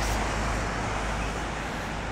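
Steady traffic noise from a wet city road, an even hiss without distinct events that fades slightly.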